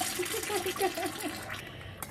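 Jar of fermenting kimchi being burped: the lid is loosened and built-up gas escapes with a crackling fizz as the carbonated brine bubbles up. The jar is overfilled, so brine spills over the rim. The fizz fades near the end.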